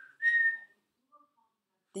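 A person whistling a few short clear notes: the loudest and highest lasts about half a second near the start, and a fainter, lower note follows about a second in.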